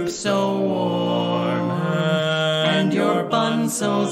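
Barbershop quartet singing a cappella in close harmony, holding long sustained chords with brief breaks between phrases.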